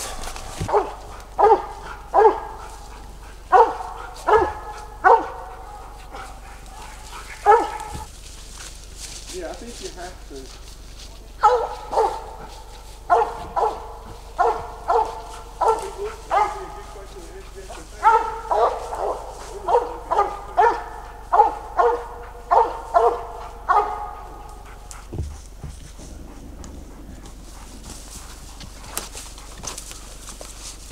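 A squirrel dog barking treed, its bark telling the hunters a squirrel is up the tree: a run of short barks about two a second, a pause of a few seconds, then a longer run that stops a few seconds before the end.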